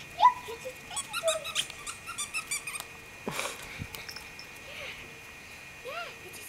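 Seven-week-old puppy giving short, high, rising yips and whimpers while it plays, the loudest just after the start. A single thump comes about three seconds in.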